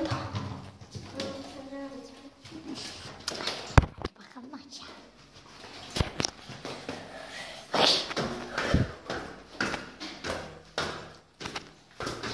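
Faint, muffled voices and rustling handling noise, broken by three sharp knocks about four, six and nine seconds in.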